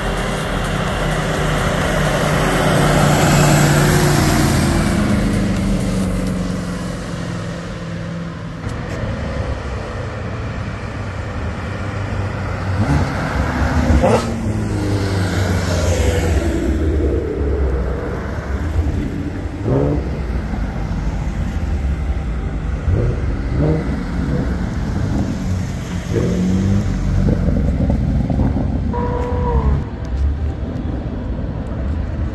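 Performance cars driving past one after another. The first engine note falls in pitch as it goes by. Later come repeated short throttle revs, each rising and dropping.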